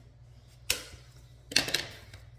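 Scissors snipping twice, about a second apart, the second snip a little longer.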